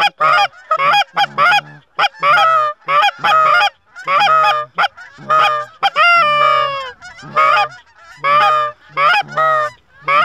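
Geese honking: a rapid run of short, loud honks and clucks, about one and a half a second, with one longer call that falls in pitch about six seconds in.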